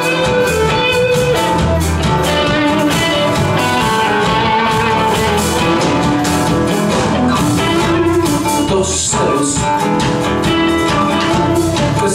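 Live Latin rock band playing an instrumental passage with a steady beat: acoustic and electric guitars over bass and drum kit.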